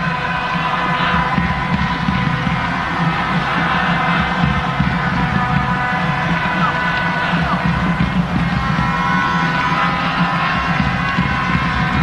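Steady stadium crowd noise under sustained background music, with held tones and no commentary.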